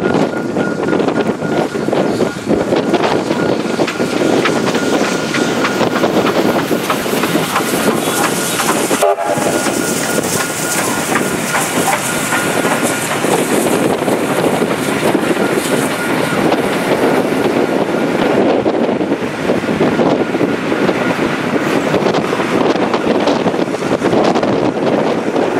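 K class steam locomotive K153 passing close by with a rake of red heritage carriages and a T class diesel at the rear: a loud, steady rush of wheels on rail with clicks over the rail joints. There is a momentary break in the sound about nine seconds in.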